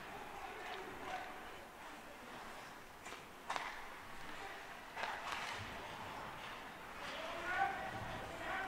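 Rink sound from an ice hockey game: scattered sharp clacks of sticks and puck, with a voice calling out near the end.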